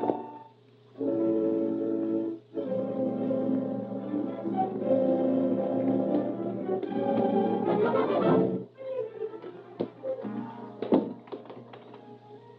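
Dramatic orchestral film score with brass, playing sustained chords that break off twice early on and stop about nine seconds in. Then come a few sharp knocks in a quieter stretch, the loudest about eleven seconds in.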